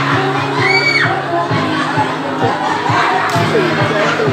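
Dance music with a steady beat, mixed with a crowd of young people shouting and cheering. One high call rises and falls about a second in.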